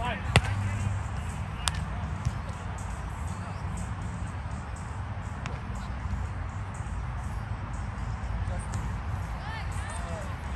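Volleyball hit hard at the net: a sharp slap of hand on ball about a third of a second in, then a second, fainter smack a little over a second later, over a steady low rumble and distant voices.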